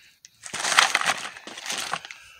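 Plastic bags crinkling as hands rummage through a plastic bin of loose bolts and screws, starting about half a second in.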